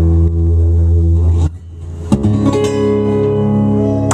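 Two amplified acoustic-electric guitars playing together: a held chord stops about a second and a half in, and a new chord is struck about two seconds in and left ringing. These are the closing chords of the song.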